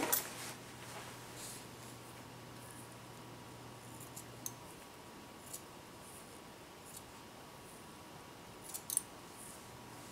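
Haircutting scissors snipping hair at the nape, blending out the clipper line: a few scattered sharp snips, with a pair at the start and another near the end. A faint low hum stops about halfway through.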